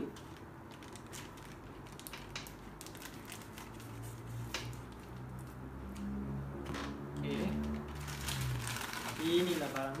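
Scissors snipping through a plastic courier mailer, then the plastic bag rustling as a bubble-wrapped box is pulled out. A low steady hum joins in about halfway through.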